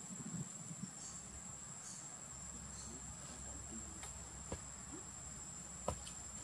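Steady high-pitched insect drone. Two sharp clicks stand out, the louder one near the end.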